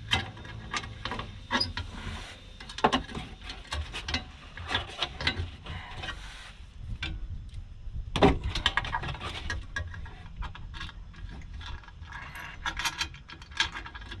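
Hand ratchet wrench clicking in short runs as a sway bar bracket bolt is turned, with metal clinks from the tool and bracket and one louder knock a little past the middle.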